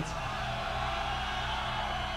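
Steady hum and hiss from a live rock band's stage sound system between songs, with faint crowd noise underneath.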